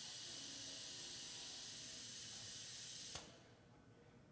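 Pneumatic vacuum suction gripper on a robot arm hissing steadily while it holds a picked jar, then cutting off with a sharp click a little after three seconds in as the suction is released to drop the jar.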